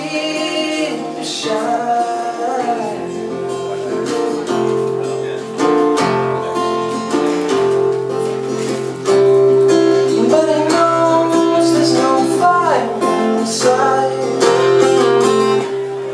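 A man singing while strumming an acoustic guitar, growing louder about nine seconds in.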